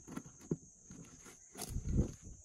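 Scissors cutting the thin plastic of a clear plastic jug: a few sharp snips and crackles, then a louder crackling rustle near the end as the cut plastic is handled.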